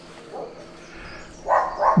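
A dog barking twice in quick succession near the end, over a quiet outdoor background.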